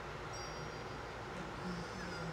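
Quiet room tone with faint children's-cartoon audio from another room, including a few soft, high chiming tones in the first second.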